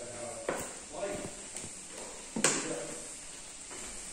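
Footsteps going down wooden stairs: a few separate knocks, the loudest about two and a half seconds in, with faint voices in the background.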